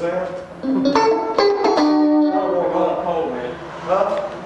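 Electric guitar being played, single notes and chords ringing out, with a run of sharply picked notes between about one and two seconds in.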